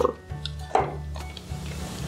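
A few light metal clicks from crimping pliers closing on a crimp bead and being handled and set down, the clearest click a little under a second in, over a steady low hum.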